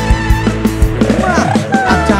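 Live band music played through a concert PA: drum kit keeping a steady beat under bass and guitar. About a second in comes a run of pitch glides that rise and fall.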